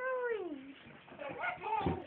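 Baby cooing: one drawn-out call that rises then falls at the start, then shorter, quieter sounds and a soft bump near the end.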